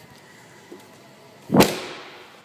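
A car's trunk lid shut with a single solid thud about one and a half seconds in, the sound dying away over a fraction of a second.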